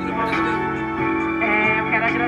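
Guitar-led music played loud through a car's trunk-mounted loudspeaker rig, with long held notes.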